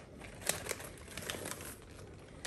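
Foil-lined potato chip bag crinkling as a toddler's hand rummages inside it for chips. The crackles come irregularly, the sharpest about half a second in.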